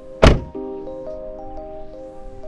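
A car door slammed shut once, a single sharp thud about a quarter second in, over background music with held notes.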